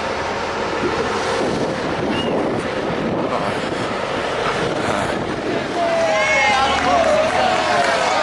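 Wind buffeting the microphone over street traffic noise as a truck passes close by, with voices calling out loudly in the last two seconds.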